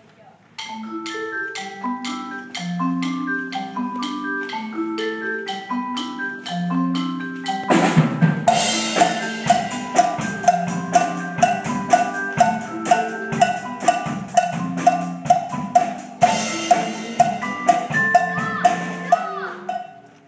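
Student percussion ensemble playing: marimbas pick out a repeating riff in single mallet notes over a steady tick, then a drum kit comes in about eight seconds in with a steady, regular beat under the mallets. The music stops just before the end.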